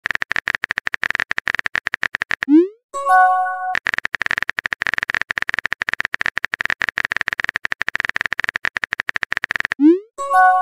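Rapid phone-keyboard typing clicks as a chat message is typed. About two and a half seconds in they are broken by a rising swoop and then a short chime of a few stacked tones as the message is sent. The typing clicks resume, and another rising swoop comes near the end.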